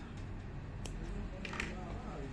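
Faint handling sounds of crochet work: a soft rustle of cotton-acrylic yarn with two short, light clicks, about a second in and again towards the end, as the crochet hook is handled.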